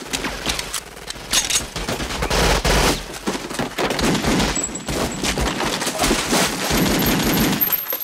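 Film shootout gunfire: a long volley of shots in quick succession from automatic weapons and a pistol, going on almost without a break.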